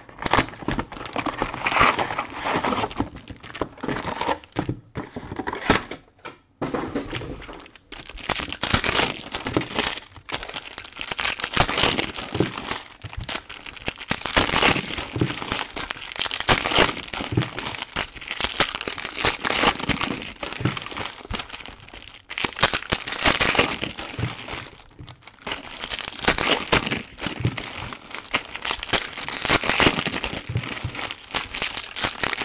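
Foil trading-card pack wrappers being torn open and crinkled by hand, a dense irregular crackling with a few short pauses in the first several seconds.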